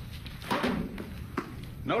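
A single sharp knock about one and a half seconds in, over low, scattered voices in a large studio.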